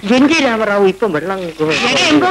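Film dialogue: voices talking almost without a break, with short pauses about one and one-and-a-half seconds in.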